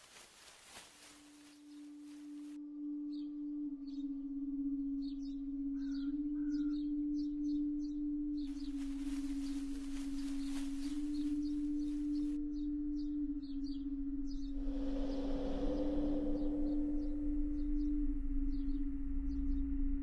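Animation soundtrack: a low held drone, wavering between two close pitches, swells in over the first few seconds under a forest ambience of short bird chirps. Two stretches of hissing, rustling noise start and stop abruptly, and a whoosh swells up about three-quarters of the way in.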